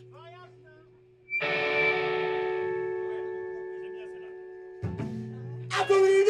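Electric guitar chord struck once through an amplifier and left ringing, fading slowly over about three seconds, over a steady amplifier hum. A short hit comes near the end, then the full rock band comes in loudly.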